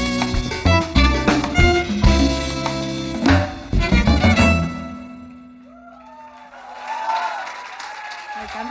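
Live Latin band of violin, electric guitar, upright bass, drum kit, congas and percussion playing the final punched accents of a salsa-style song, stopping about four and a half seconds in. One low note rings on and fades over the next couple of seconds.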